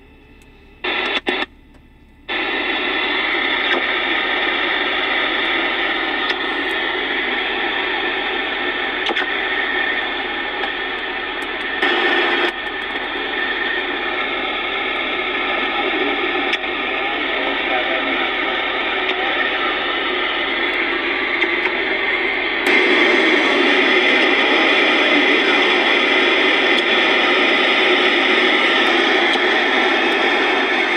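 Electronica 360 AM/SSB CB transceiver's speaker putting out receiver static with voices from other stations as it is tuned across channels. Two short crackles come about a second in, then the hiss opens up about two seconds in. A brief surge comes near the middle, and about two-thirds through the hiss gets louder and brighter.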